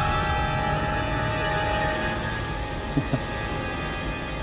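Dramatic background music: several held tones that fade out about halfway through, over a low rumble.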